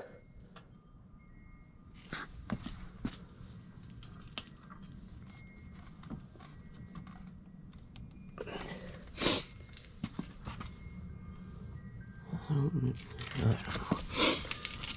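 Scattered knocks, clicks and rustles of someone moving about and handling parts, over a low steady hum. The loudest knock comes about nine seconds in, and there is faint muttering near the end.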